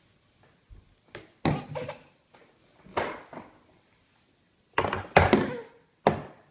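Knocks and thuds of things banged on a wooden table and plastic high-chair trays: a few light knocks, then three heavier bangs, the loudest near the end.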